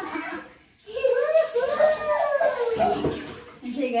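Water being poured and splashing over a child taking a cold shower. About a second in, the child lets out one long wordless cry whose pitch rises and then falls.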